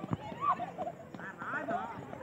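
Men's voices shouting and calling out, with several high yells that rise and fall, and a short sharp knock right at the start.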